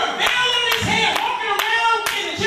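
Rhythmic hand clapping, about two claps a second, under a man's voice through the sound system.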